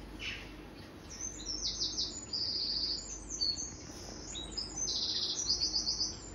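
Small birds chirping in quick, high, repeated trills, coming through a television's speakers from a garden bird video, in several bursts from about a second in.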